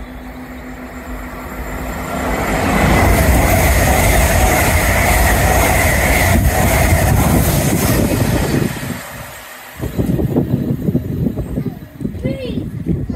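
Electric express passenger train running through a station without stopping, growing louder as it approaches and loudest as the coaches pass, with a steady whine over the rushing rail noise. After a sudden break it goes on as rougher, gusty noise while the train runs away.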